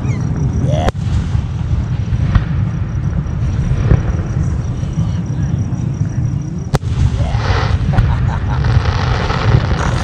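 Aerial fireworks going off at a distance, a continuous low rumble of bursts with sharp cracks about a second in and just before seven seconds.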